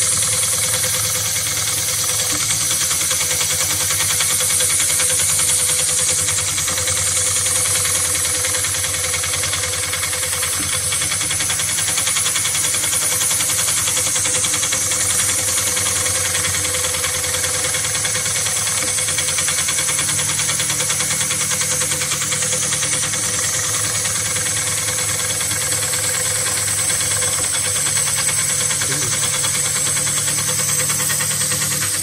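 HighTex 7367CS heavy-duty industrial sewing machine running steadily at speed, its needle stitching through multi-ply synthetic webbing in a rapid, even rhythm.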